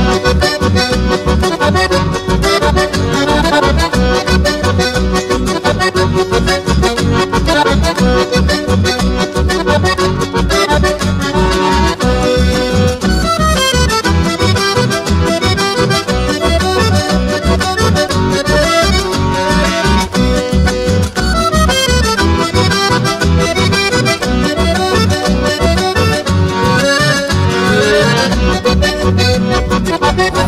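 Instrumental chamamé: a button accordion carries the melody in sustained chords and running phrases. Guitar and acoustic bass keep a steady pulse underneath.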